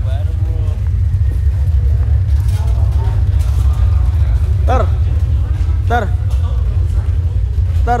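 A loud, deep, steady rumble, with a person shouting short calls about five and six seconds in and again at the end.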